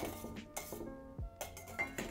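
Wire whisk clinking a few times against a stainless-steel mixing bowl of beaten egg white, over soft background music.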